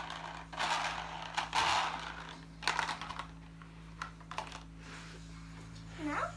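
Handling noise of plastic toys: a run of light plastic clicks and knocks with rustling, as a toy carriage is set down on carpet and the phone is moved.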